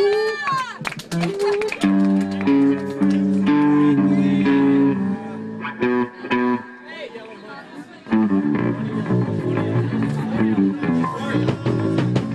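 Live punk band's electric guitar and bass guitar playing held notes and chords, heavy on the bass, with a quieter lull about halfway through. Indistinct voices sit underneath.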